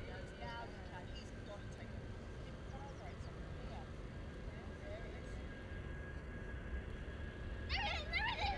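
Distant aircraft engine: a steady low rumble with a faint steady whine above it, while voices chatter faintly and grow clearer near the end.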